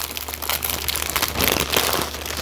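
Plastic bags crinkling and rustling as hands rummage through a bag of small diamond-painting drill packets, an uneven run of crackles.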